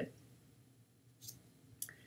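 Quiet room tone broken by a faint short hiss a little past the middle and a single short click near the end.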